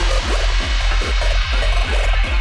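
Psytrance track at full drive: a punchy kick drum a little over twice a second over a rolling sub-bass line, with busy high synth textures and hi-hats above.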